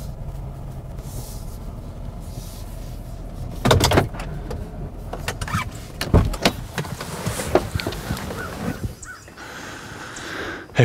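Chevrolet SUV's engine running at low speed as it tows an enclosed aluminum trailer forward and stops. There are several loud clunks and rattles, the loudest about four seconds in.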